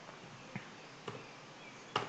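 A few faint computer keyboard keystrokes, soft separate clicks over a low steady hiss, with a sharper click near the end.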